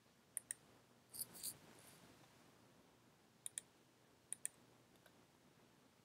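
Computer mouse button clicked three times in quick pairs, each a sharp click and its release, spread over a few seconds, with a soft brief noise about a second in.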